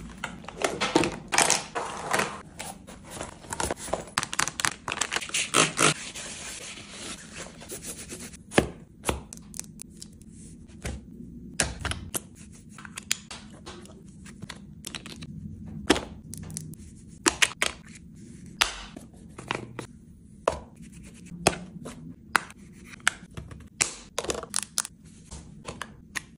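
Close-up handling of a padded makeup case and its contents: dense rustling and scraping with quick clicks for about the first eight seconds, then separate sharp taps and knocks as items are set down in the compartments.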